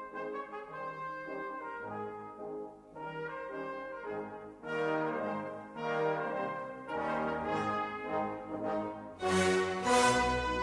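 Brass music with held chords, louder in the second half, swelling strongly near the end.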